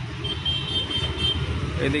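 Steady rumble of city road traffic, with a thin, high, steady tone lasting about a second.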